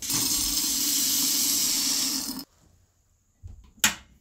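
Small metal casting grains poured from a scoop into the crucible of an electric melting furnace: a steady rushing rattle of metal beads that stops suddenly after about two and a half seconds. One sharp click near the end.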